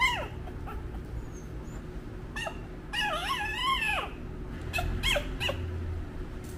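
Newborn puppies whimpering and squeaking in high, thin cries: a falling squeal at the start, a longer wavering whine about three seconds in, and a few short squeaks near the end.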